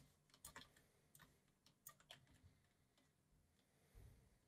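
Faint, irregular clicks of a computer mouse and keyboard.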